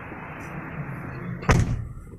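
A car's rear side door being shut, closing with a single loud slam about one and a half seconds in.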